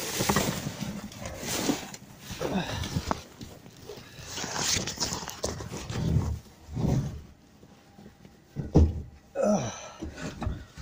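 Black plastic bin bags rustling and being shifted about in a skip, with a person's heavy breathing in short bursts.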